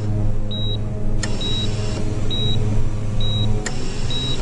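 Hospital patient monitor beeping: a short high beep a little under once a second, four in all, over a steady low hum. Two sharp clicks come about a second in and again near the end.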